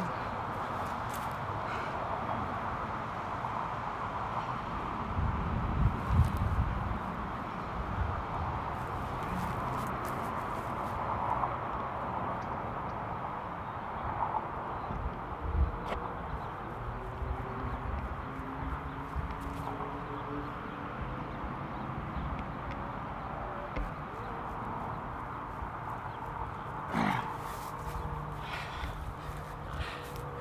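Steady outdoor background noise, a continuous even hiss-like hum, with a few low bumps about six seconds in, faint gliding tones midway and a sharp knock near the end.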